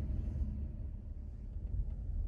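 Steady low rumble of a parked car's engine left idling.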